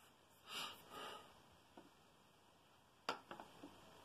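Quiet room with two short soft breaths about half a second and one second in. A sharp click comes about three seconds in, followed by a few faint ticks.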